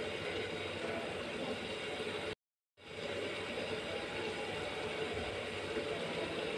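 A steady machine-like drone with a hiss, broken once by a moment of dead silence about two and a half seconds in.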